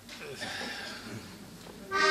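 Faint voices and murmur, then a heligonka (diatonic button accordion) sounding a loud sustained chord that starts suddenly right at the end, opening a polka.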